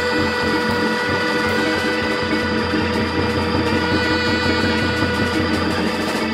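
Live soul-jazz quartet of alto saxophone, Hammond organ, electric guitar and drums, with the alto sax holding one long steady note over the organ and a regular pulse from the drums.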